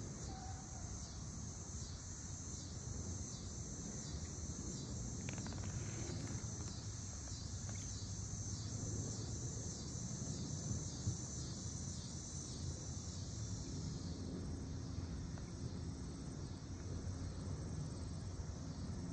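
Insects chirping in a steady, high-pitched pulsing rhythm that weakens near the end, over a low outdoor rumble.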